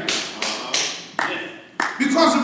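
Five sharp taps at irregular spacing, each dying away quickly, the first few about a third of a second apart and the last two about half a second apart.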